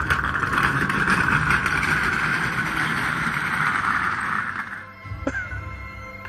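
Armchair being pushed fast over asphalt, grinding along the ground in a steady rough noise that stops just before five seconds in, followed by a single sharp click. Background music plays underneath.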